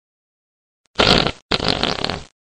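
Two farts in quick succession: a short one about a second in, then a longer one half a second later.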